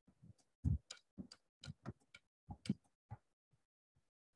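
Computer keyboard being typed on: a quick, uneven run of individual keystroke clicks, about three a second.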